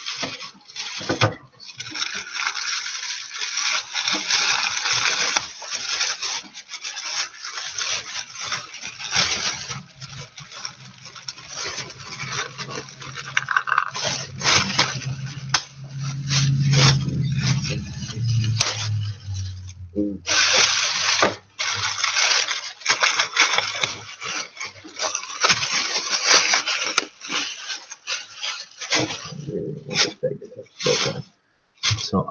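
Thin plastic bag crinkling and rustling as it is handled, with many small crackles. A low hum sounds under it for several seconds in the middle.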